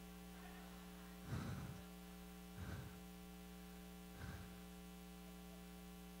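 Steady electrical mains hum from the sound system, with three faint short bursts of laughter spread through the pause after a joke.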